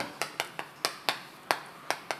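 Chalk clicking against a chalkboard while writing: a string of sharp, irregularly spaced taps, about seven in two seconds.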